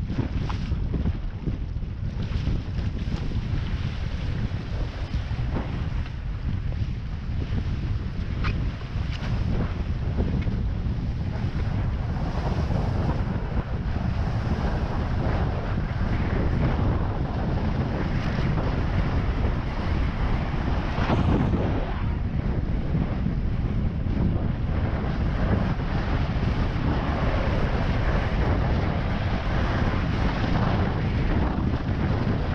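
Wind buffeting an action camera's microphone, with the rush of water off a windsurf board as it accelerates from a standstill to speedsailing pace. The noise grows fuller and a little louder about halfway through as the board speeds up.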